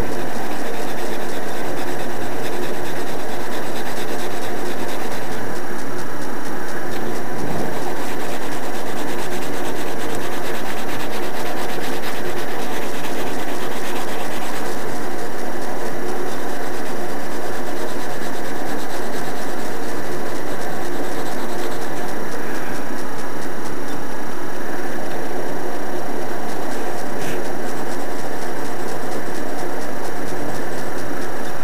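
Pencil rubbing and scratching across paper as a drawing is shaded in, under a loud steady hiss with a faint hum.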